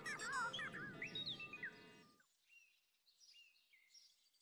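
Light background music fading out over the first two seconds, while birds chirp in short, quick glides. The chirps carry on faintly once the music has stopped.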